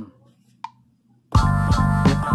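GarageBand metronome count-in clicks on an iPad, then just over a second in, the recorded drum-and-bass beat starts playing back loudly for the recording take.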